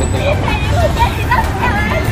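Several people talking and shouting over one another, with steady low street noise underneath.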